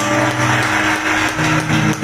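Live band playing sustained held chords, with the lower notes shifting to a new chord about two-thirds of the way through.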